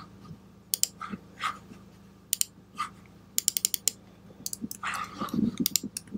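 Typing on a computer keyboard: scattered single keystrokes, then a quick run of clicks about halfway through, over a faint steady low hum.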